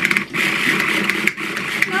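Small handheld electric pumpkin-carving tool running steadily as it cuts into a pumpkin, a buzzing motor whine with a short dip about halfway.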